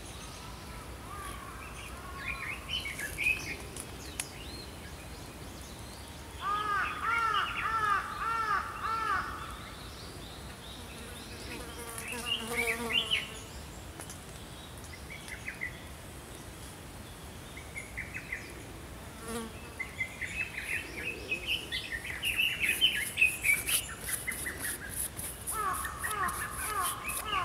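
Small songbirds singing in woodland in separate phrases. The loudest phrase is a run of repeated arching notes about six seconds in, and a busier stretch of calls comes near the end. Underneath runs a faint, steady high hiss.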